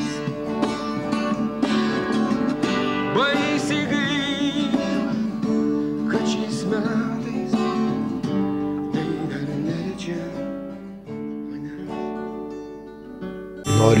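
Classical guitar fingerpicked in an arpeggio pattern, with a voice singing along. About ten seconds in, the playing thins out and the last chord rings and fades.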